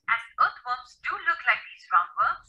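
Speech: a person talking in quick syllables.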